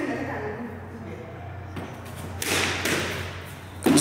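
A few thumps of a squash ball being hit with a racket and striking the court's walls and wooden floor, the loudest burst about two and a half seconds in.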